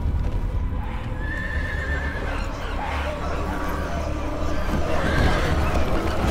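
Horses whinnying and hooves pounding over a deep, steady rumble. A high, wavering whinny stands out about a second in, with more calls after it.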